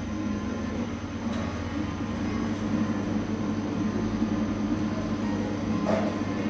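Coffee shop background noise: a steady low hum under a general room haze, with a brief sharp click about a second in.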